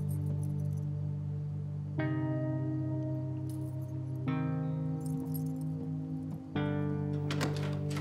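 Background score of long held low chords that change three times, with a few light clicks and jingles over it, clearest near the end.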